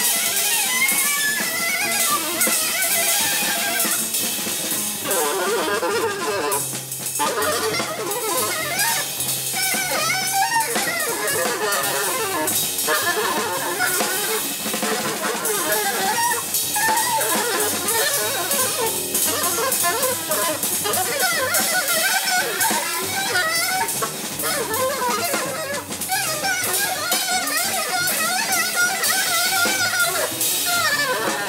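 Free jazz played by a saxophone, drum kit and double bass trio: the saxophone blows dense, constantly wavering lines over busy cymbals and drums, with the double bass plucked underneath.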